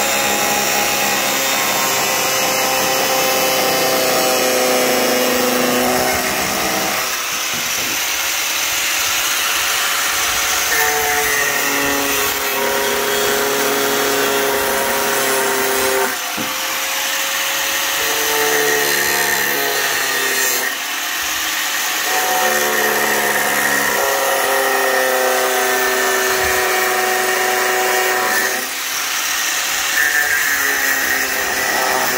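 Electric angle grinder with an abrasive disc cutting through a plastic tail-light housing. The motor's whine sinks and rises in pitch as the disc bites into the plastic and eases off, with a few brief let-ups.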